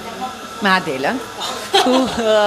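A woman's voice, a short vocal sound about a second in, then a woman bursting into laughter near the end.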